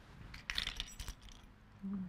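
Small metal sewing-machine presser feet clinking together as they are handled and taken out, a quick cluster of clinks about half a second to a second in.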